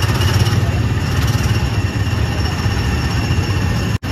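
Small gasoline engines of Tomorrowland Speedway ride cars running, a steady rough engine rumble with a faint high whine over it.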